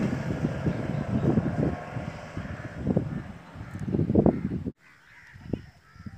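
A road vehicle going by, heard as an uneven low rumble mixed with wind buffeting the microphone. The sound cuts off abruptly about three-quarters of the way in, leaving only faint outdoor background.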